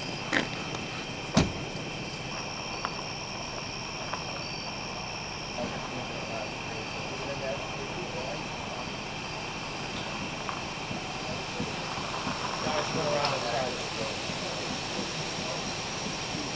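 A steady, high-pitched chorus of night insects chirring, with low, indistinct voices murmuring in the background. A single sharp click about a second and a half in is the loudest sound.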